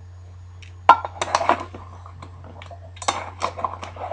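Empty tuna can clanking and scraping on a tile floor as a dachshund noses and pushes it: one sharp clank about a second in, then runs of clinks and scrapes, with another run about three seconds in.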